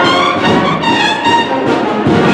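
Cornet-and-drum band playing a Holy Week procession march: bugle-like cornets sound sustained, changing notes over a continuous drum accompaniment.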